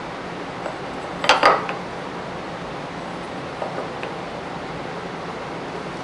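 A small square being set against a maple board's end while dovetail lines are marked, with a cluster of sharp clicks about a second in and a few light ticks later, over a steady hiss.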